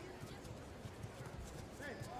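Irregular dull thuds of bare feet stepping and stamping on tatami mats as two judoka grip-fight, over a faint murmur of arena voices.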